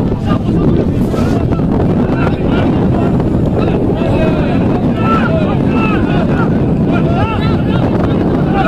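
Wind buffeting the microphone in a steady low rumble, with distant shouting voices from around a rugby pitch rising and falling over it.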